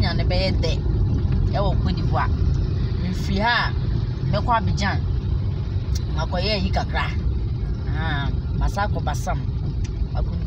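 Steady low rumble of road and engine noise inside a moving car's cabin, with a person's voice speaking in short phrases over it.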